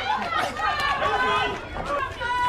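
Several people's voices talking and calling out over one another, without clear words.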